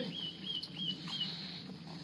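A run of high, squeaky laughter: four quick giggling notes in the first second or so, then fading out over a steady low background noise.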